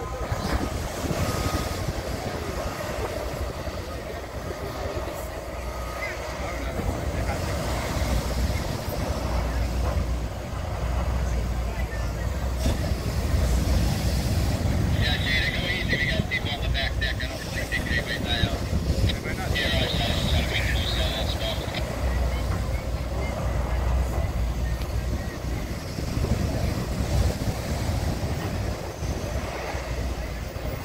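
Surf breaking and wind on the microphone, with a heavy engine rumbling low from about seven seconds in. A higher sound with steady tones comes in for several seconds in the middle.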